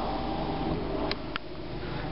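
Steady hum of a car idling, heard from inside the cabin, with two light clicks a little after a second in.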